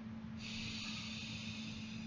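A man breathing close to the microphone: one long breath that begins about half a second in, over a steady low hum.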